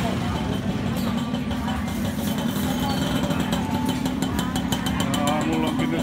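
Busy market ambience: people talking around the stalls over a steady low engine hum.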